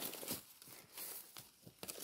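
A few faint rustles and crackles, loudest at the start and again about a second in.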